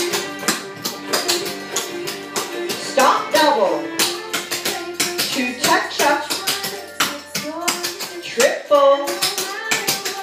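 Clogging shoes' metal taps striking a hardwood floor in quick, rhythmic bursts of steps, over a recorded song with a singing voice.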